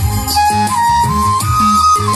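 Folk dance music playing through a stage loudspeaker: a high melody climbing step by step over a steady bass beat.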